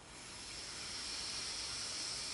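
A person's long, deep breath, a soft hiss that swells up about a third of a second in and holds steady: long deep breathing held through a meditation.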